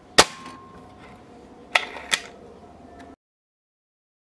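A single shot from a .177 break-barrel spring-piston air rifle, a sharp crack just after the start with a brief ring after it. Two further sharp clicks follow about two seconds in.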